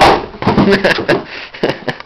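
A sudden loud burst, then people's voices laughing and exclaiming, with several sharp knocks and clicks mixed in.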